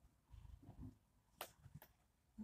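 Near silence, with faint low rustling in the first second and two short faint clicks about a second and a half in.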